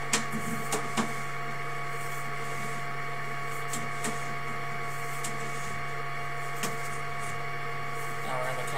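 Steady mechanical hum with a constant whine from sewer-inspection camera equipment as the camera is drawn back through the pipe, with a few light clicks, most of them in the first second.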